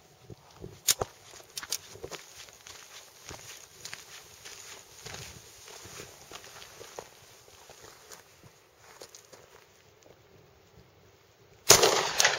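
Light crunching footsteps and scattered clicks of handling on gravelly ground, then a loud pistol shot near the end with a short echoing tail.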